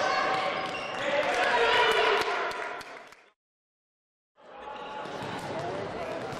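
Basketball game noise in a gym: voices of the crowd and players together with the ball bouncing on the floor. The sound cuts out completely for about a second just after the middle, then the game noise comes back, quieter.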